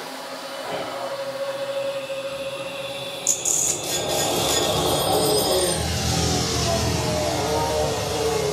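Stage sound effect played over the hall's speakers: a held steady tone, then a burst of rattling clicks about three seconds in, growing into a loud low rumble with slowly falling tones.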